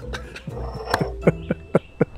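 Men's stifled laughter: breathy, muffled chuckling that breaks into a quick run of short laughing pulses, about five a second, in the second half.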